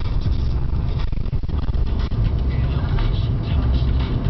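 Steady low rumble of road, tyre and engine noise heard from inside a car moving at highway speed.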